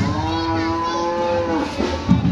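An ox mooing once, a single long call that holds steady for about a second and a half and drops slightly in pitch at the end.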